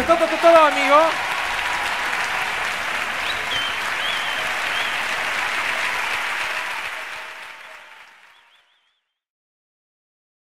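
Theatre audience applauding and cheering, with a short high-pitched voice right at the start and a few whistles, as a piano performance ends. The applause fades out over a couple of seconds to silence near the end.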